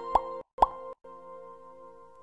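Short intro jingle for an animated logo: a held musical chord with two quick pops about half a second apart, then the chord rings on and slowly fades.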